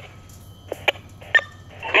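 Fire radio in a lull between transmissions: a few short clicks and a brief beep, then a voice comes over it at the very end.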